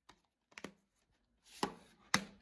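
Plastic DVD cases being handled and knocked on a wooden tabletop: a few sharp clicks and knocks, the loudest about a second and a half in.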